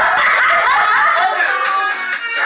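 Women laughing over dance music playing in the room.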